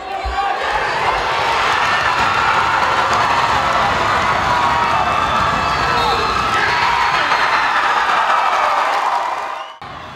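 Crowd of spectators in a gymnasium cheering and shouting for a high school wrestler working toward a pin, many voices overlapping. It swells in at the start and fades out shortly before the end.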